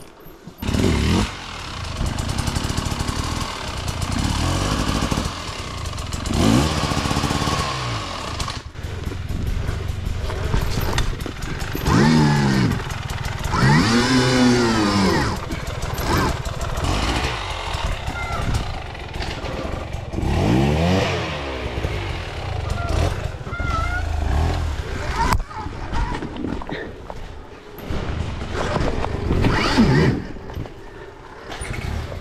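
Stark Varg electric dirt bike's motor whining, its pitch rising and falling several times as the throttle is opened and closed at low speed, with a few knocks from the bike over rough ground.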